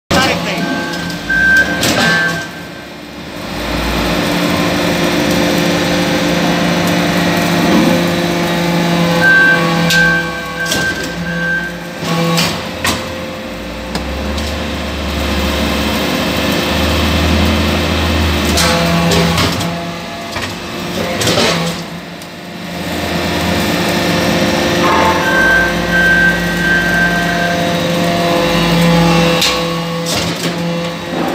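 Hydraulic metal-chip briquetting press running through its automatic cycle: the hydraulic power unit hums steadily, and a low rumble swells as each stroke compacts aluminum turnings. Sharp metallic clanks come as the finished briquettes are pushed out. The cycle repeats about every ten seconds, with a brief lull between strokes.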